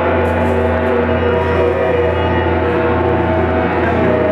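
Electric guitar played through a board of effects pedals, making a dense ambient drone: a steady low tone under many held, ringing tones that blend into one sustained wash.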